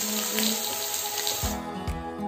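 Oyster mushrooms sizzling in hot oil in a frying pan, with music underneath. The sizzle cuts off about one and a half seconds in, and background music with a steady beat takes over.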